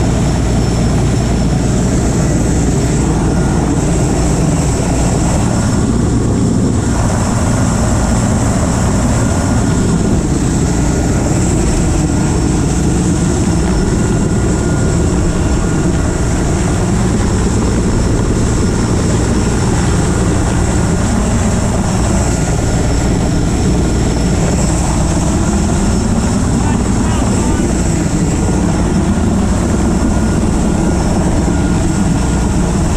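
Helicopter running steadily close by: a continuous loud rotor and engine sound whose pitch wavers slowly.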